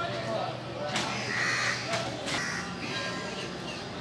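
Crows cawing a few times, with people's voices in the background.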